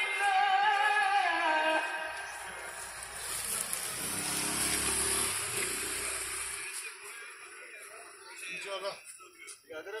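The last phrase of a sela, a long wavering chanted line from the mosque's minaret loudspeakers, ending about two seconds in. Then a passing motor vehicle rumbles and hisses by, fading out about seven seconds in.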